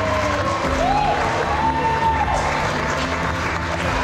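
Audience applauding over background music that holds long, steady notes.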